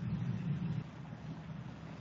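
Steady low hum with faint hiss from background noise on a meeting microphone; no words.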